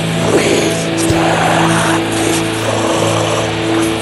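Blackened drone doom metal: heavily distorted electric guitars hold long, sustained low notes under a dense, harsh wash of noise.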